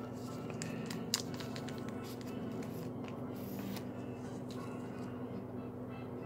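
Faint handling of a trading card in a plastic sleeve and top loader: light scrapes and clicks of plastic, with one sharper click about a second in.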